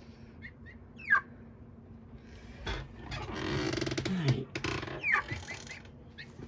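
Young chickens peeping in short falling notes, once about a second in and again near the end. In between, a couple of seconds of fluttering and scuffling as they scramble.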